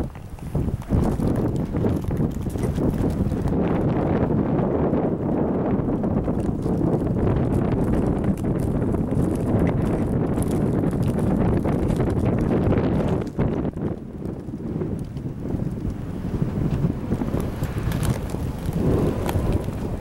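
Wind buffeting the microphone in gusts, a loud low rumbling rush that drops away briefly a little past the middle.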